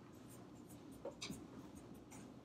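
A marker pen writing on a whiteboard, making faint scratching strokes, a few of them sharper a little over a second in.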